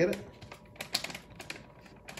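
Light, irregular clicks and taps, a few a second.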